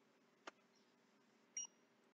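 Near silence: faint room tone with a soft click about halfway through and a second click near the end that carries a brief high ring.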